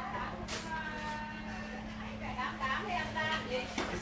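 Faint background voices over a steady low hum, with one sharp click about half a second in.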